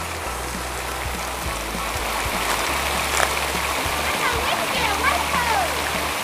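Water falling in a curtain from the edge of an overhead canopy into a shallow pool, a steady splashing rush.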